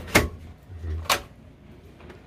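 Two sharp clicks about a second apart from a slide-out telescopic range hood being pulled open and handled.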